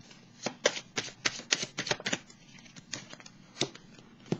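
Tarot cards being shuffled and handled by hand: a quick run of crisp card snaps through the first couple of seconds, then a few separate flicks as a card is drawn from the deck.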